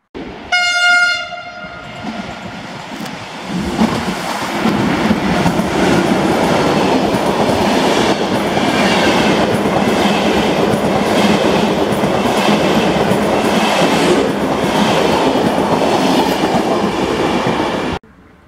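A Bombardier Traxx E186 electric locomotive sounds one short horn blast. About three seconds later its long passenger train, the Paris–Moscow express of Russian Railways sleeping cars, passes close by with a loud, steady rumble of wheels on the rails.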